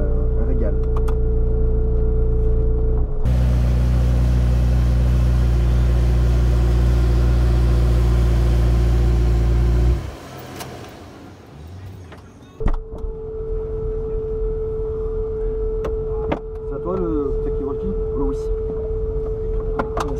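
McLaren P1's twin-turbo V8 idling while parked, with a steady mid-pitched tone over it at first. The engine sound cuts off abruptly about halfway through, leaving a quieter stretch. A sharp knock follows, then a lower steady rumble with the same tone.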